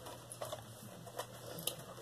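Faint scattered taps and rustles of a cardboard meal-kit box being handled and lifted.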